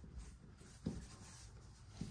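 Microfiber cloth wiping across a smartphone's glass screen: a faint rubbing, with one light tap a little under a second in.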